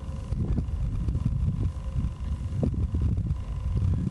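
Wind buffeting the camera microphone: an uneven low rumble that rises and falls.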